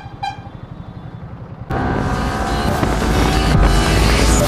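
Two short vehicle horn toots over the low rumble of a motorcycle engine in slow traffic. A little before halfway, loud background music cuts in suddenly and carries on.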